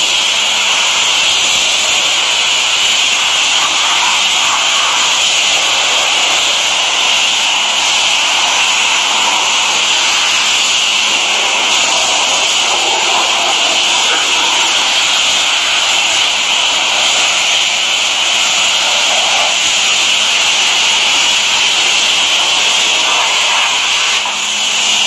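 Self-service car-wash pressure washer spraying water onto a walk-behind tiller: a loud, steady hiss.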